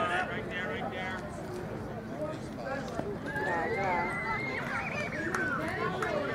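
Overlapping chatter of players and spectators at a baseball field, with a long high-pitched call held for about two seconds from about three seconds in.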